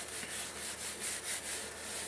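Felt whiteboard eraser rubbing across a whiteboard, a hissing scrub that swells and fades with each quick back-and-forth stroke.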